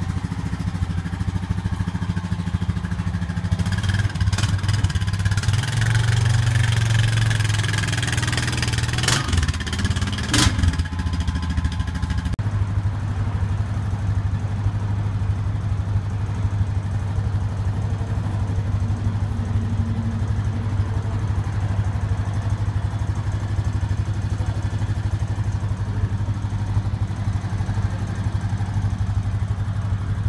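The single-cylinder engine of a brand-new Honda Rancher 420 ATV running. It is louder for the first dozen seconds, with two sharp clicks around nine and ten seconds in, then settles into a steady idle.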